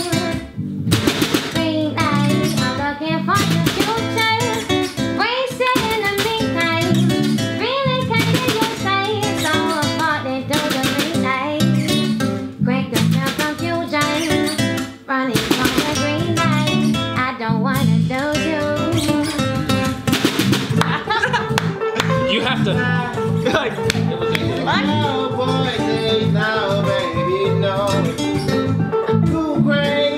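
A small live band jams an Afrobeat-style groove, with acoustic guitar and electric guitars over a drum kit with cymbals, in a steady rhythm throughout.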